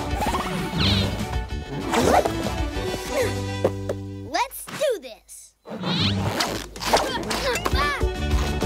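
Cartoon action soundtrack: background music with wordless vocal cries and swooping sound effects, with a held chord around three seconds in. It drops out briefly about five seconds in.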